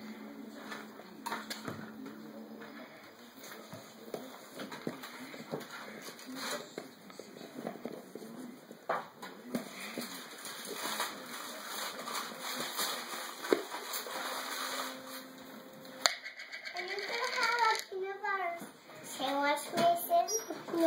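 Scattered light clicks and knocks as a plastic peanut butter jar and its screw lid are handled on a kitchen counter, with one sharper knock about sixteen seconds in. A child talks after that.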